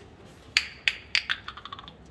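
A run of sharp clicks, each with a short ringing tail: four spaced ones, then a quicker patter of smaller clicks near the end.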